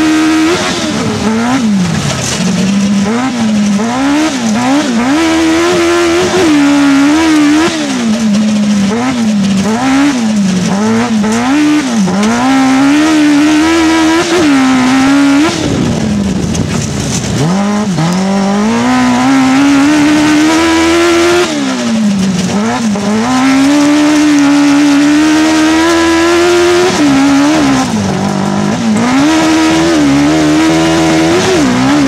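Onboard sound of an autocross racing car's engine driven hard, its revs climbing and dropping again and again, with one long dip and slow climb about halfway through.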